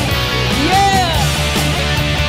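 Heavy rock music with electric guitar. About halfway through, a lead note slides up and then falls back down.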